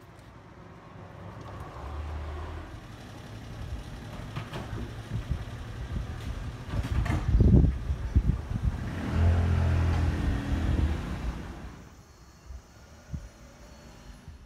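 Road vehicle traffic passing close by: engine and tyre noise swelling, loudest about seven to eight seconds in, with a second engine passing soon after, then fading away.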